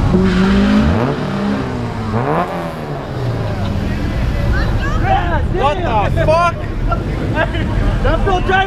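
Car engines revving as cars roll up to the start line of a street drag race, the revs rising and falling in the first few seconds. Crowd voices shout over the engines in the second half.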